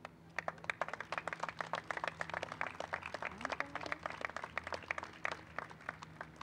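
An outdoor audience applauding, with separate hand claps standing out. The applause starts about half a second in and dies away near the end.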